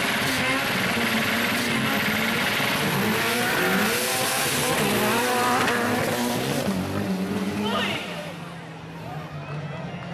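Engines of two Suzuki Samurai 4x4 racers revving hard at full throttle as they race side by side on a dirt track, loud for about eight seconds and then falling away.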